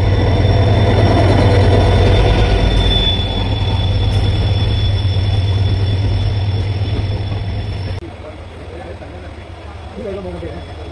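Diesel locomotive and its passenger coaches passing close along a station platform: a loud, steady low rumble with a thin high whine over it. About eight seconds in the sound drops suddenly to a much quieter level.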